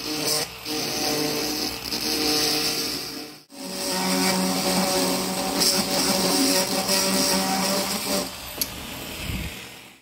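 Dremel rotary tool running steadily with a small bit, cutting around the edges of a diecast toy's window glazing. It breaks off sharply about three and a half seconds in, starts again, and dies away near the end.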